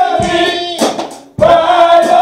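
A small group of women singing a gospel song in the church. About a second in they break briefly between phrases, then come back in on a long held note.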